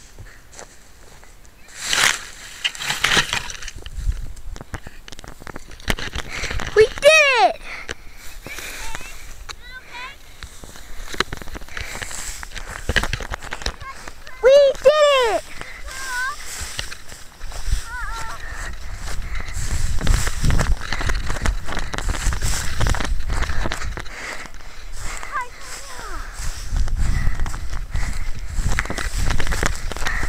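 Dry grass rustling and crackling against a model rocket's onboard camera as it is found and picked up, with two long shouted calls from people nearby. Later, handling rumble and wind on the camera's microphone as the rocket is carried by hand.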